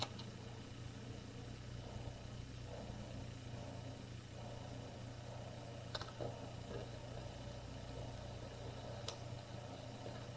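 Faint rustling of clear transfer tape and a small vinyl ring being pressed by hand onto a plastic jar lid, with two light ticks about six and nine seconds in, over a steady low hum.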